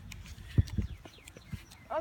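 A few short dull thumps, the loudest about half a second in, over a low wind rumble on the microphone.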